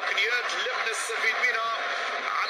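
A man's voice talking over a steady noisy background.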